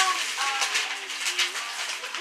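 Wrapping paper tearing and crinkling as a flat gift is unwrapped, a steady crackling rustle.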